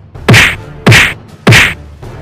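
Three identical added impact sound effects, evenly spaced, each a sudden loud hit whose pitch falls away quickly.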